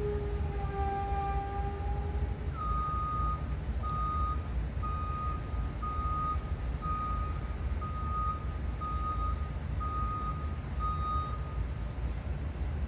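A vehicle's reversing alarm beeping, nine beeps about one a second, over a steady low rumble. It is preceded by a held, slightly falling tone lasting about two seconds.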